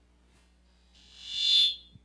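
A high-pitched squeal from the church's PA sound system swells for under a second, then cuts off abruptly, followed by a short low thump.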